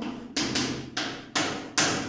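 Chalk hitting and stroking a chalkboard as a word is written: four sharp taps, roughly one every half second, each with a brief ringing tail.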